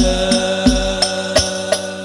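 Al-Banjari sholawat: a group of male voices sings in unison, holding long notes. Hand-played frame drums (terbang/rebana) beat a steady rhythm of about three strokes a second underneath, with a deeper stroke every other beat.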